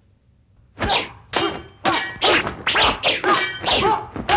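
Staged martial-arts fight sound effects: after a short hush, a fast run of about eight sharp whacks and metallic clangs, a few of them ringing, as weapons strike and clash.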